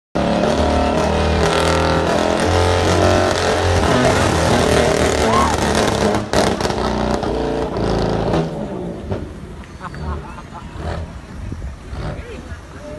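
BMW M3 engine revving hard and held at high revs, as for a launch-control start, with the pitch stepping up and down and a sharp crack about six seconds in. The engine noise drops away after about eight seconds.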